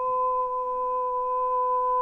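A countertenor holding one long, high sung note, dead steady in pitch without vibrato.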